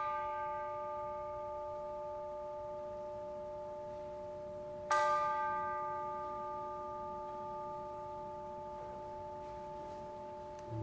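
A bell ringing out from a stroke at the very start and struck again about five seconds in; each stroke rings on with several steady tones that fade slowly.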